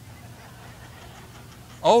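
Room tone with a steady low hum during a pause in a man's speech; near the end he speaks again ("Oh").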